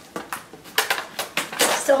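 Small hard objects rattling and clicking inside a cardboard parcel as it is handled, in a quick irregular run of sharp clicks.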